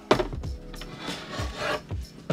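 A wooden fold-out seat section knocks and then scrapes as it is slid out of the booth's wooden frame, wood rubbing on wood.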